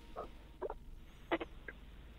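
A few faint, short clicks and squeaks, four in two seconds, over low room tone.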